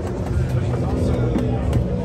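Light taps of chess pieces on a vinyl board and presses on a digital chess clock's buttons during a fast bullet game, a few scattered clicks over a steady low rumble and background voices.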